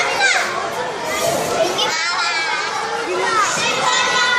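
A crowd of young children chattering and calling out at once, many high voices overlapping.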